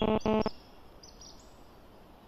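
A loud, buzzing pitched sound that cuts off abruptly about half a second in. It gives way to faint outdoor background hiss with a few short, high bird chirps.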